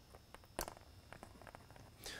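Faint small clicks and ticks of thin wire leads being handled and twisted together by hand, with one sharper click about half a second in.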